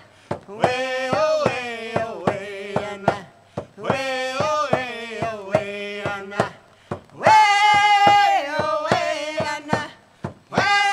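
Round-dance song: voices singing in three long phrases with short breaks between them, over a steady drumbeat. The third phrase, about seven seconds in, opens the loudest.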